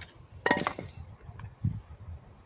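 Scrap metal finds from magnet fishing clinking together: a short, sharp metallic clatter about half a second in with a brief ring, then a dull thump near the end.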